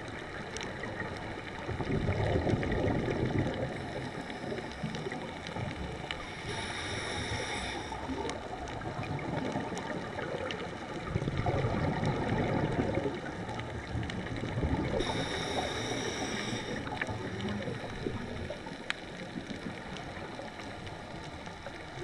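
Scuba diver's regulator breathing heard underwater through a camera housing: a hissing inhale with a faint whine alternating with a low rumble of exhaled bubbles, a cycle about every eight or nine seconds, over a steady underwater wash.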